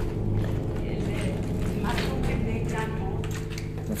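Brief, untranscribed bits of speech over a steady low hum.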